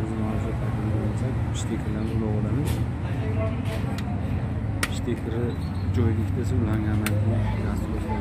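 Voices talking over a steady low hum, with a few sharp clicks, the loudest about five seconds in.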